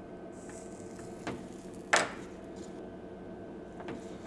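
Steady low background hum with a few sharp clicks and taps from tools handled on a power supply circuit board during soldering; the loudest click comes about two seconds in.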